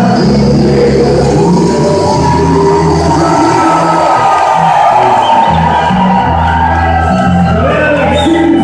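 Live German-style wind band (bandinha) playing, with a bass line that moves in steady note steps under a long held melody note through most of the passage.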